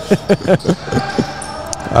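Men laughing in a quick run of short bursts, then the quieter sound of the gym with a couple of sharp knocks from the court.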